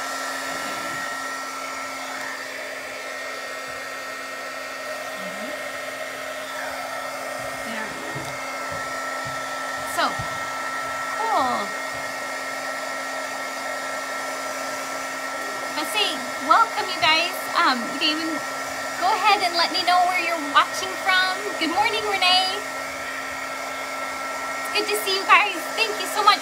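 Handheld craft heat tool (embossing-style heat gun) switching on and blowing hot air steadily: an even rush of air with a constant motor whine, noisy. It is drying a freshly brushed coat of chalk paint.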